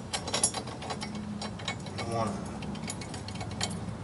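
Rapid small metal clicks and clinks, densest in the first second and scattered after, as steel bolts are set into a reverse-bucket bracket plate and started into their threads by hand.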